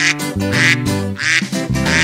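About four duck quacks, one every half second or so, over a bouncy children's-song backing track.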